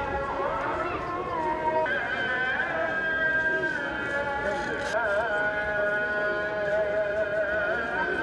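A voice singing long held notes with wavering, ornamented turns, over a low murmur of a crowd.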